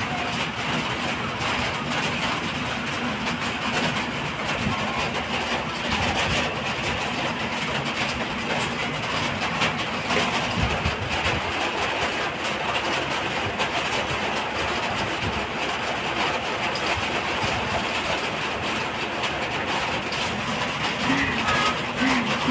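A steady, even rushing noise with no clear events, unchanging throughout.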